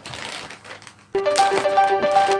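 Plastic courier mailer bag crinkling as it is handled for opening. A little over a second in, louder background music with a steady melodic line starts suddenly and covers it.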